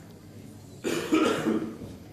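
A single throat-clearing cough lasting about a second, starting near the middle, close to the microphone.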